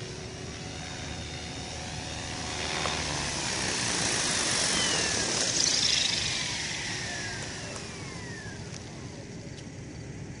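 Electric MSHeli Protos RC helicopter coming down with its rotor hissing and motor whining, loudest as it settles, then spooling down: the whine slides steadily lower in pitch as the main rotor slows.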